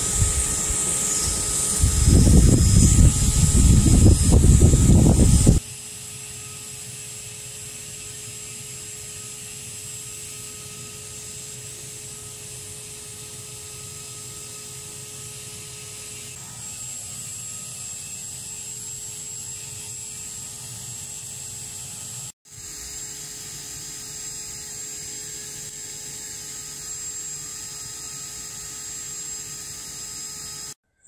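Small electric furnace's cooling fan running with a steady whine and hum, loudest in the first five seconds, where low rumbling comes with it; it then drops suddenly to a quieter steady hum.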